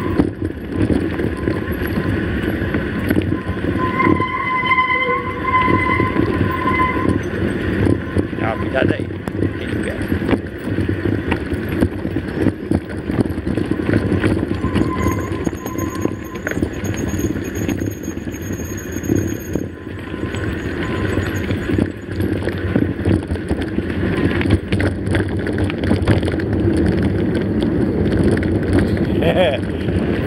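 Mountain bike riding over a rough dirt and gravel road: tyres crunching on loose stones, with the bike rattling over the bumps and wind on the microphone. The sound is steady and noisy, full of small clicks and knocks.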